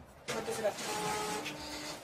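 Office photocopier/printer running: a whirring, hissing machine sound with a few steady hums underneath, starting about a quarter second in.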